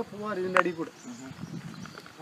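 A person's voice talking during the first second, speech rather than any other sound.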